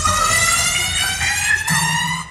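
Electronic dance music over a stage sound system: the kick-drum beat drops out and a high, siren-like synth tone with many overtones slowly rises in pitch.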